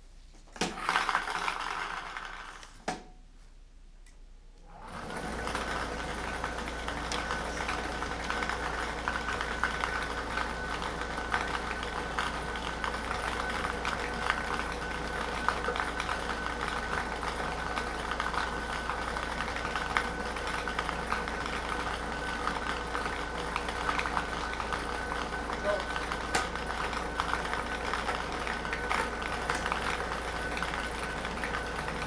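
Air-mix lottery ball machine starting up about five seconds in, then running steadily: a blower hum with the numbered balls rattling and clicking against the clear dome as they are mixed.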